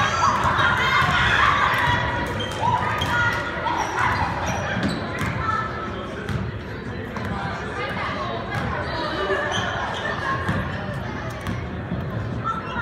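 A basketball dribbled on a hardwood gym floor, bouncing again and again, under the shouts and chatter of players and spectators echoing in a large gym.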